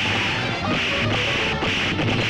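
Fight-scene sound effects: a few sharp punch and slap hits, about a second in, again half a second later and near the end, over dramatic background music.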